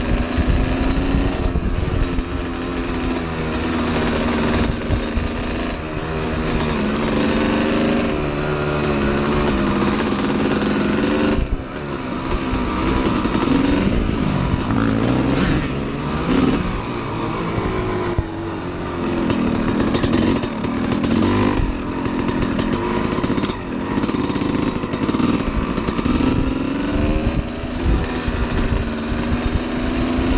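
1992 Kawasaki KX250's two-stroke single-cylinder engine under way, its pitch climbing and falling with the throttle. The level drops sharply for a moment about eleven seconds in.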